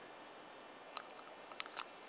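Small birch-bark flame burning with a few faint crackles in the second half, over a quiet hiss.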